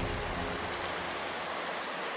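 Steady, even rush of running water from a glacial river and the small stream feeding it. The tail of background music fades out in the first half second.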